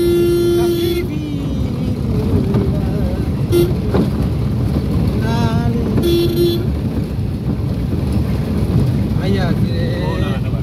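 A vehicle horn honks three times: a honk of about a second at the start, a short beep about three and a half seconds in, and a half-second honk about six seconds in. Underneath is the steady rumble of a moving vehicle and road noise.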